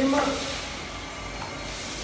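A steady hiss of background noise, with faint handling of a plastic soap dispenser's lid as it is lifted off its wall-mounted base.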